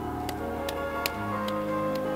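Piano playing slow, sustained chords in a song's introduction, with sharp light ticks about twice a second over it.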